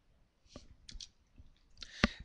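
Football trading cards being flipped through by hand, with a few faint clicks as card edges snap past one another.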